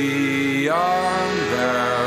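Male voice singing a long held note over accordion, moving to a new pitch a little over halfway through.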